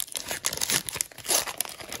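Foil wrapper of a Pokémon booster pack crinkling and tearing as it is ripped open by hand, in a quick string of crackles.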